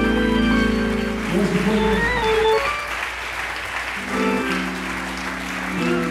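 Hammond B3 organ playing held chords with a steady low bass note. The chords drop out a little after halfway and come back about four seconds in, over the applause of a congregation.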